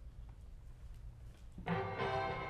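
A grand piano begins playing, a full chord sounding about one and a half seconds in after a stretch of quiet room hum.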